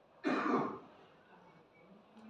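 A man clearing his throat once: a single short, loud burst about a quarter of a second in, lasting about half a second.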